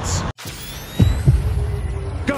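Heartbeat sound effect in an edited intro: two low thumps in quick succession about a second in, over a low hum with faint rising sweeps.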